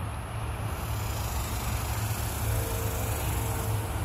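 Steady low hum of an idling engine, with a faint higher tone joining about halfway through.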